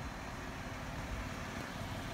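Steady outdoor background noise on a parking lot, a low rumble with a faint hiss and no distinct events.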